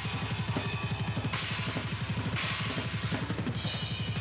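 Heavy metal drum kit playing: a rapid, steady stream of double bass drum strokes with cymbals ringing over them.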